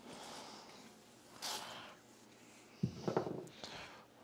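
Aerosol polish spray can hissing in short squirts onto a plastic vacuum cleaner housing, the longest about half a second in the middle. Near the end comes a louder cloth rubbing and handling noise as the polish is wiped over the plastic.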